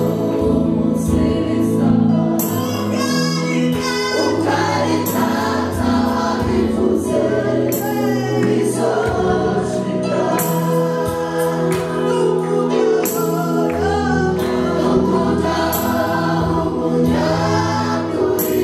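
Gospel worship song: a woman leads on a microphone while a mixed choir sings along with musical backing. The singing is loud and unbroken.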